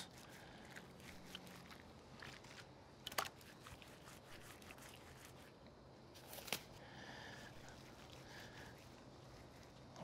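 Faint wet rubbing of a gloved hand smearing mustard over a raw brisket, with two small clicks, about three seconds in and again after six seconds.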